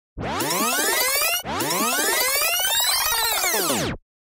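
Electronic transition sound effect: two swooping pitch sweeps, each rising and then falling. The first is short and the second longer.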